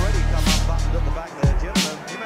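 Music track with a deep, steady bass line and a snare-like hit about every second and a quarter; the bass drops out briefly past the middle.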